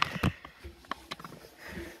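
Front-loading washing machine drum turned by hand with the machine switched off: a sharp knock, then a few lighter clicks and rubbing as the drum turns.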